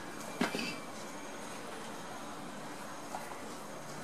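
Steady low hiss of room tone with no speech. There is one short, sharp sound about half a second in and a faint tick about three seconds in.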